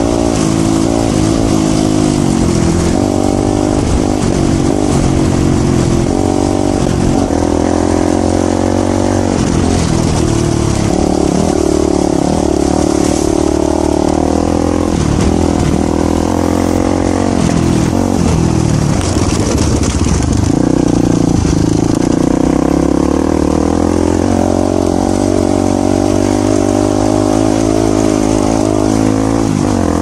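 Voge 300 Rally's single-cylinder engine running under way on a dirt track, heard from on the bike. Its pitch rises and falls with the throttle through the first part, then holds steadier.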